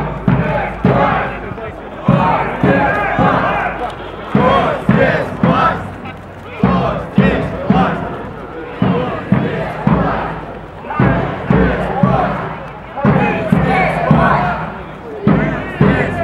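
Crowd of marchers chanting slogans in a steady rhythm, with a sharp accent about once a second.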